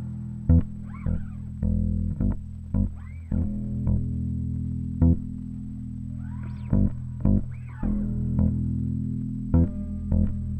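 Electric bass guitar played live through an amplifier: sustained low notes, punctuated by sharp percussive hits at uneven intervals.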